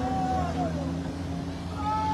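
A drawn-out, high-pitched cry that glides down and stops about half a second in, then a brief high cry near the end, over a steady low hum.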